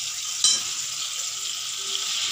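Tomato, garlic and green chilli masala sizzling in hot oil in a steel kadhai, with a sharp clink about half a second in.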